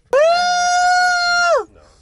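A person's voice letting out one long high-pitched squeal, held at a steady pitch for about a second and a half before it falls away.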